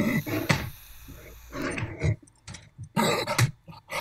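A man's wordless vocal outbursts: a few short shouts with silent gaps between them.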